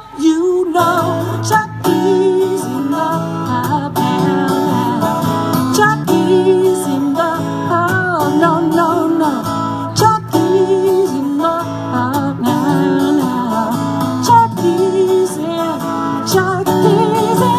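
Two acoustic guitars strumming a song in a steady rhythm, with a singing voice over them; the full playing comes in just after the start.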